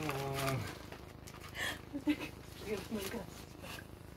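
Human voices making non-word sounds: a held hum at one steady pitch for about half a second, then a few short vocal sounds, with brief rustling and scuffling noises in between.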